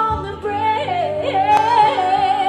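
A woman singing live into a microphone, a wordless run that slides between notes and ends on a held note with vibrato, over steady held accompaniment chords.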